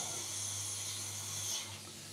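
Quiet steady hiss with a low hum beneath it; the hum drops away about a second and a half in.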